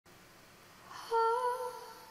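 A woman's voice humming one held, slightly wavering note, starting about a second in after a near-quiet opening.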